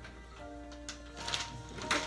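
Background music with a few held, steady notes, and a couple of light clicks about halfway through.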